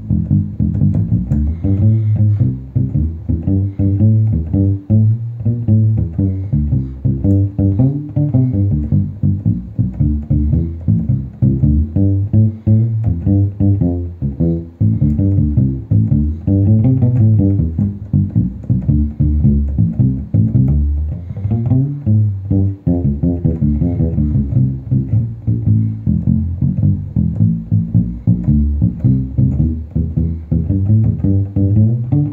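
SX Ursa 3 fretless PJ bass played fingerstyle through an amp in a steady run of quick improvised funk notes. The strings are damped with a Gruv Gear Fump mute, giving a short, staccato sound like palm muting.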